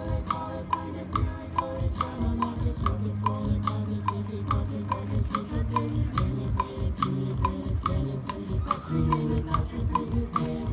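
Marching band playing: brass holding low, sustained chords over a steady ticking beat of about three ticks a second.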